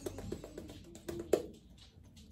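Badger shaving brush working soap lather on the face, a series of soft wet clicks with one sharper click about a second and a half in.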